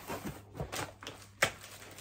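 Cardboard box and packaging being handled: a run of short rustles and light knocks, with one sharper click about a second and a half in.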